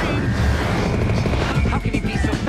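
Anime action soundtrack: music mixed with heavy, low mechanical sound effects and a voice.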